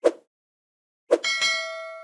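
Sound effects from an animated end screen: a short pop at the start and another about a second in, then a bright bell ding that rings and fades. The ding is the chime for the notification bell.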